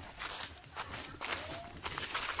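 Hikers' footsteps on a dry leaf-littered forest trail, irregular steps about two a second.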